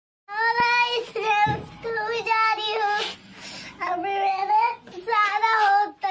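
A young child singing in a high voice, several short phrases of held notes.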